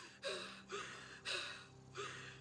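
A woman's ragged, gasping breaths, four in quick succession about half a second apart, each with a slight catch of voice.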